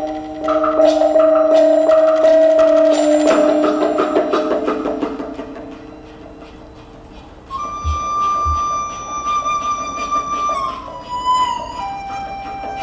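Chinese traditional orchestra music. A yangqin (hammered dulcimer) plays struck notes over sustained tones, and these fade away over the first several seconds. About two thirds of the way in, a high sustained bowed erhu note enters with two soft low drum thumps, then slides down a step near the end.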